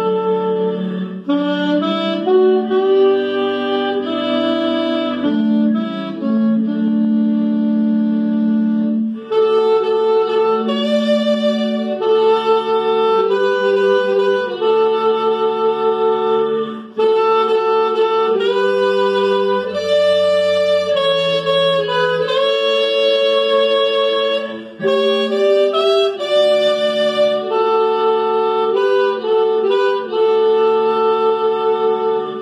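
Alto saxophones playing a slow hymn in several-part harmony: one player overdubbed on himself, with the alto carrying the soprano line over the other voices. The notes are held, moving together in phrases with short breaths between them.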